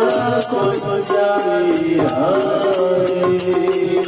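Hindi devotional bhajan sung to the names of God, with a melody over held tones and a steady percussive beat.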